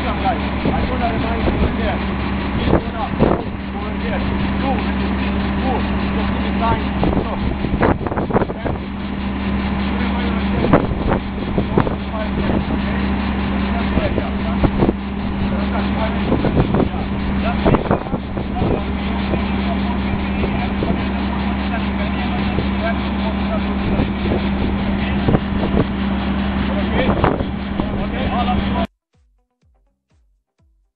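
Men talking over the steady drone of an idling engine, with a few knocks; all of it cuts off suddenly near the end.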